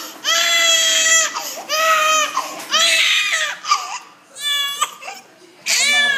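Infant crying hard in pain from a freshly pierced ear: a run of loud wails about a second long each, with a short fluttering, catching cry past the middle and another wail starting near the end.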